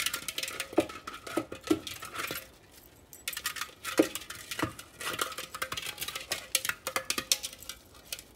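A Podenco dog mouthing and pushing a hard egg-shaped ball around in crusty snow: a busy run of crisp crunches and clicks with a few duller knocks, pausing briefly about three seconds in.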